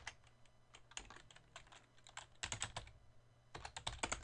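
Computer keyboard typing: faint, scattered single keystrokes, then quick runs of keys about two and a half seconds in and again near the end.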